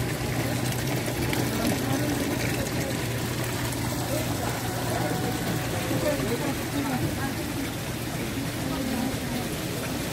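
Water running and trickling through live seafood tanks over a steady low pump hum, with a murmur of voices in the background.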